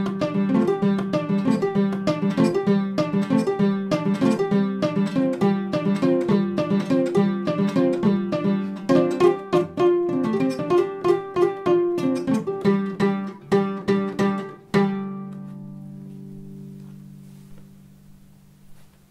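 Kora, the West African calabash-bodied harp-lute, played solo: quick flowing runs of plucked notes over a repeating low line. A few seconds before the end a final note is struck and left to ring, fading away.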